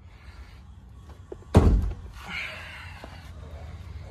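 A single loud thunk about one and a half seconds in as the Kia Seltos's hood release is pulled from the driver's footwell and the hood latch pops, followed by softer rustling.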